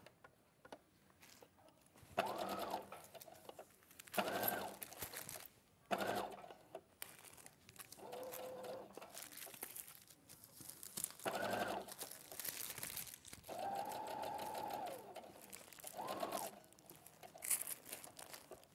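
Electric domestic sewing machine stitching a quarter-inch seam in short stop-start runs of about a second each, about eight runs with pauses between as the fabric is guided round.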